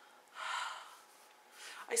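A woman's breathy exhale, like a short sigh, lasting about half a second near the start, followed by the first word of her speech at the very end.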